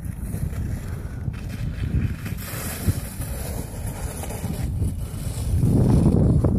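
Wind buffeting the phone's microphone on open ice: a low, gusting noise that rises and falls and grows louder near the end.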